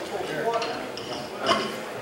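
Indistinct voices talking in a large hall, with one sharp clink about one and a half seconds in.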